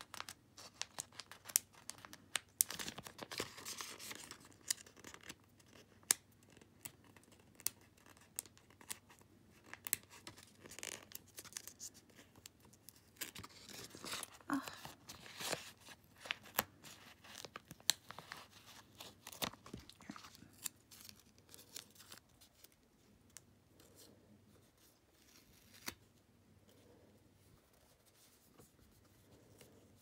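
Stickers being peeled off their backing sheet and paper sheets handled: bursts of crinkling and peeling with many small sharp clicks and taps, quieter and sparser in the last several seconds.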